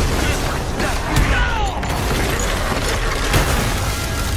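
Animated action soundtrack: a dense mix of low rumbling booms and sharp impact effects, with a brief gliding cry a little over a second in.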